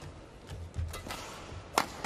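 A badminton racket sharply striking a shuttlecock near the end, with players' footfalls thudding on the court about a second before it.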